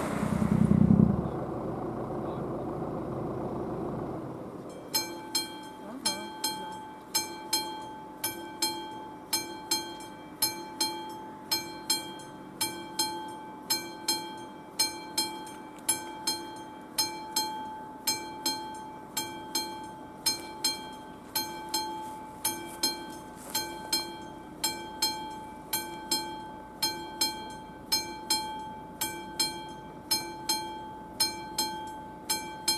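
A car passes close by at the start. About five seconds in, the level crossing's classic warning bell starts ringing, struck about twice a second, each strike ringing on: the crossing has been activated for an approaching train.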